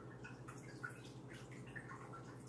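Aquarium water trickling with small scattered drips, over a steady low hum from the tank's equipment.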